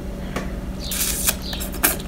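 A few small clicks and a short hiss about a second in, over a low steady hum.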